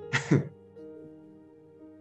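A man's short vocal sound at the very start, then soft background music holding sustained notes that change about a second in.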